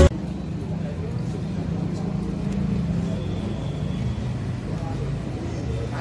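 Ambient sound of a large open hall: a steady low rumble with a faint, distant voice.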